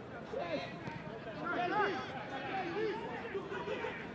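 Footballers and coaches shouting and calling to each other on the pitch, several voices heard at a distance.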